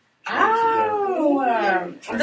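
A person's long, drawn-out vocal sound: one unbroken call that rises a little and then slides down in pitch for about a second and a half, starting just after a brief silence.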